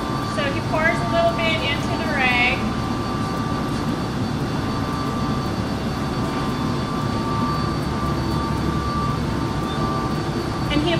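Steady mechanical drone with a few constant whining tones over a low rumble. A voice speaks briefly in the first couple of seconds.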